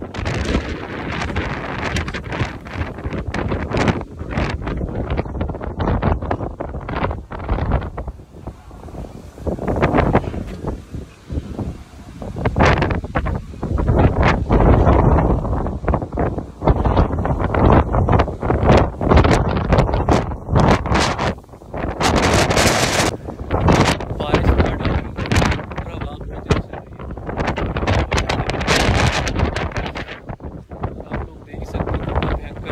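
Strong storm wind gusting and buffeting the phone's microphone in uneven loud rushes that rise and fall.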